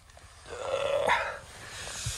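A man yawning as he stretches on waking: one long breathy yawn that swells to a peak about a second in and tails off.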